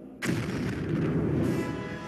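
A sudden loud explosion boom with a low rumble, swelling again about a second later, over sustained music: the sound of an atomic bomb test blast on an archival documentary film soundtrack.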